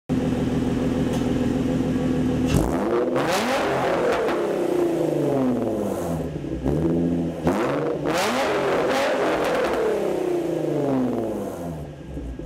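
Infiniti G35's 3.5-litre V6 heard through a Motordyne Shockwave aftermarket dual exhaust: idling, then revved twice. Each time the pitch shoots up and winds back slowly to idle.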